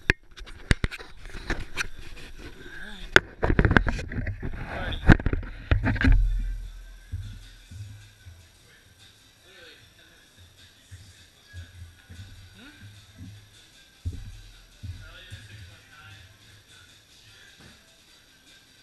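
Close handling noise from the camera being moved and set up: a run of loud knocks, clicks and rubbing for about the first six seconds. After that the gym is much quieter, with low rumble and faint background music.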